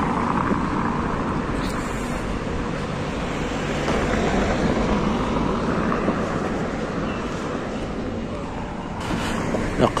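Street traffic noise, a car passing on the road alongside: a steady rushing that swells in the middle and eases off near the end.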